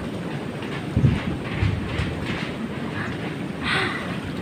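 Wind buffeting a phone's microphone: an uneven low rumble with a few louder gusts, and a short hiss near the end.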